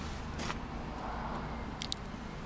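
Low steady outdoor background hum, with a short faint click about half a second in and two quick ticks near the end.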